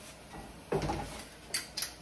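Small glass bowl being handled: a soft knock about three quarters of a second in, then two light glassy clicks near the end.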